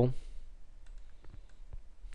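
A few faint computer mouse clicks, spaced irregularly, after the tail of a spoken word at the very start.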